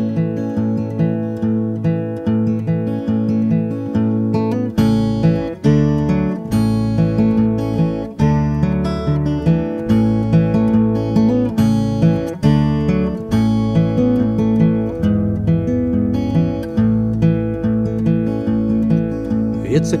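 Acoustic guitar playing an instrumental intro of rhythmic picked and strummed chords, the bass notes growing fuller about five seconds in.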